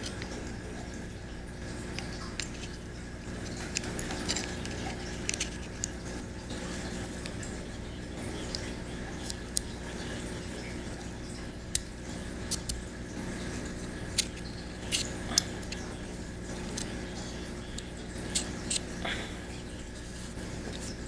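Scattered light clicks and taps of small metal parts being handled and fitted into a Ruger 10/22 trigger housing, over a steady low hum.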